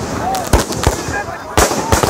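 Aerial fireworks bursting overhead: several sharp bangs, the loudest about half a second and a second and a half in.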